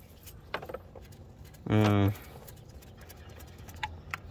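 A man's short held vocal sound, a hum or drawn-out 'ehh', about halfway through, over low background noise with a couple of faint clicks.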